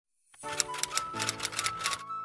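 Typewriter keystroke sound effect, a quick run of clicks at about five a second, over background music; both start about a third of a second in.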